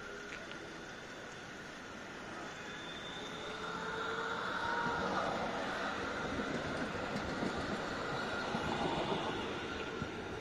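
A rail vehicle, likely a city tram, passing close by on the street. Its sound builds over a few seconds, is loudest about halfway through and carries a high whine from the wheels or motors.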